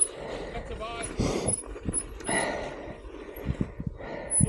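Mountain bike rolling over a rough dirt trail: the bike rattles and knocks over the bumps, with tyre and wind rush. Two louder rushes come about a second and two seconds in.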